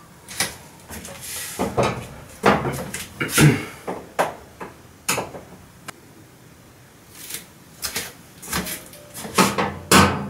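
Irregular clicks, knocks and light clatter of hands working at a Vaillant gas boiler's sheet-metal casing: a small metal cover being handled and screwdrivers picked up and set down while the cover screws are loosened.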